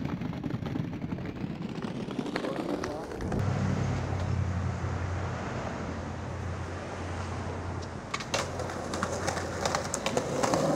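Street ambience with indistinct voices and traffic; a vehicle engine runs low and steady from about three seconds in. Several sharp clicks come near the end.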